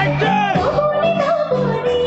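Live Assamese song: a woman singing an ornamented, bending melody into a microphone over live band accompaniment, settling into a long held note in the second half.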